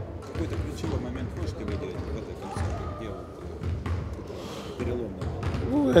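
Background murmur of many voices in a large hall, with irregular low thuds of basketballs bouncing on the court.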